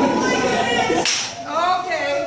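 Excited, high-pitched voices without clear words, broken about a second in by a short, sharp rush of noise.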